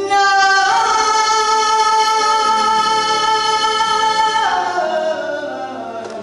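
Female flamenco singer holding one long sung note on "la". It quavers in an ornament at the start, then holds steady, and slides down in pitch and fades near the end.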